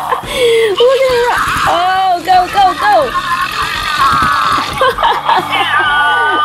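Grumblies interactive plush toys in meltdown mode, their small speakers playing a continuous stream of high-pitched cartoon grumbling and gibberish, with a warbling stretch about four seconds in.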